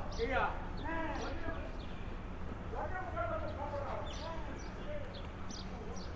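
Background voices of people talking and calling out with no clear words, over short high bird chirps and a steady low rumble.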